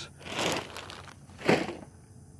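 Footsteps and rustling in long grass: a soft rustle about half a second in, then a sharper, louder crunch about one and a half seconds in.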